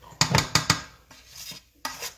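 Spoon scraping and knocking against a pot of cooked rice as it is fluffed: a quick run of clattering knocks in the first second, then a single knock near the end.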